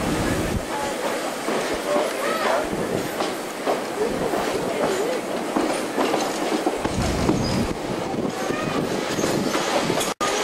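Vintage railway carriage rolling slowly, heard from its open end platform: steady wheel and track noise with occasional clicks over the rail joints.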